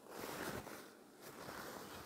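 Faint rustling of cotton fabric and batting being handled and opened out, in two soft spells.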